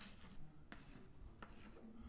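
Faint pen strokes writing on a surface: a handful of short, scratchy strokes spaced irregularly over a low hiss.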